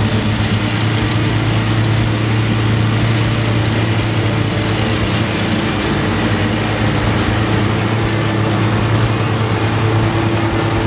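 Two commercial stand-on lawn mowers, a Wright ZK and a Ferris Z3X, running at top speed with their blades cutting field grass: a steady engine drone with a strong low hum that holds throughout.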